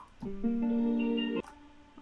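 Software guitar instrument playing back a held chord of several steady notes through effects, cutting off suddenly about a second and a half in.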